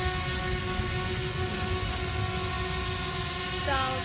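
DJI Spark quadcopter hovering: its propellers give a steady whine of several held tones over a low rumble.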